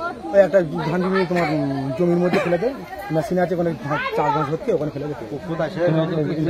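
Only speech: men's voices talking, overlapping at times.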